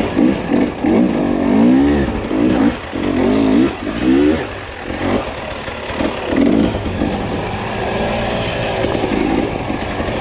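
Dirt bike engine revving up and down with the throttle, its pitch rising and falling about every half second for the first four seconds or so, then running more evenly with a couple of further blips.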